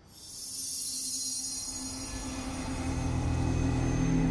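Soundtrack sound effect for a magic transition: a bright high shimmer starts suddenly, and a low sustained drone swells up beneath it about halfway through, growing steadily louder.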